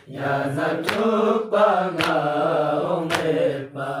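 A male voice chanting a Balti noha, a Muharram lament, in long held, wavering melodic lines, over a sharp beat about once a second.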